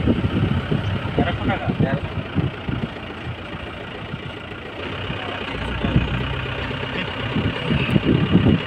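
Engine and road noise of a car driving, heard from inside: a steady hum that grows louder and deeper about five seconds in, with voices talking over it in the first two seconds.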